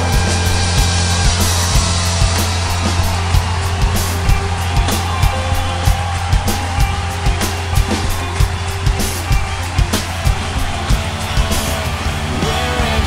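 Acoustic Tama Superstar drum kit played along to a gospel rock band track: a steady beat of kick and snare hits with cymbals over the bass and band, at roughly two strong hits a second.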